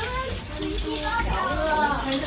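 Unclear talk and children's voices from a group of people moving through a small indoor space, with a faint high-pitched tone pulsing rapidly and steadily behind them.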